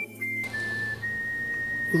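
Background film music in a pause between lines: one steady, high, whistle-like note that steps down slightly in pitch about half a second in, over a low hum.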